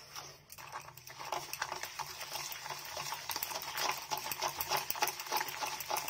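A spoon beating instant coffee, sugar and warm water in a plastic bowl by hand: a fast, steady run of wet clicking strokes against the bowl, starting about half a second in, as the mix is whipped toward dalgona foam while the sugar is still grainy.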